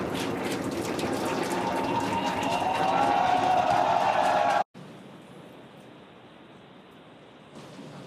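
Falcon 9 first stage's nine Merlin engines climbing after liftoff: a dense crackling rumble that cuts off suddenly about four and a half seconds in, leaving a faint steady hiss.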